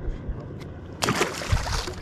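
A smallmouth bass released back into the lake, splashing at the surface about a second in; the splash lasts about a second and cuts off abruptly.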